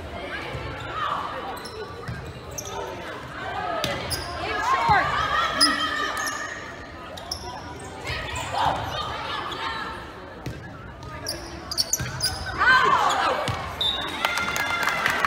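Volleyball rally in a reverberant gym: the ball is struck and hit back over the net several times, with short shoe squeaks on the hardwood court and players and spectators calling and shouting. The voices grow louder near the end as the point is decided.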